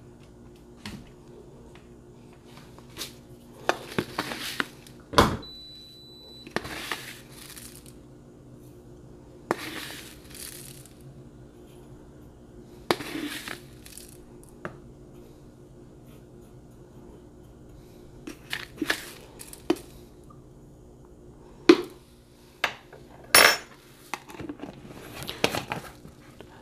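Loose granular black tea being spooned into a stainless steel espresso portafilter basket: a series of short rustling pours, each about a second long. Sharp metal clinks against the basket come in between, the loudest about five seconds in and again near the end.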